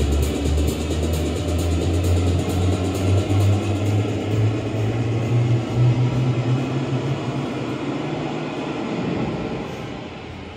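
A DJ mix of electronic dance music on CDJ decks, carried by a deep, steady bassline. About nine seconds in, the bass drops out and the music grows quieter.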